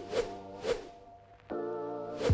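Swoosh transition effects over background music: two quick swishes, a fade almost to quiet, then a steady electronic chord that starts suddenly about three-quarters of the way through.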